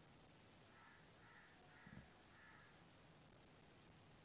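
A bird calling faintly four times in a row, about half a second apart, with a soft low thump near the middle.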